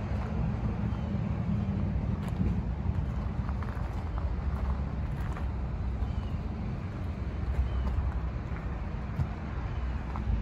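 Steady low outdoor rumble, with a few faint crunching footsteps on gravel.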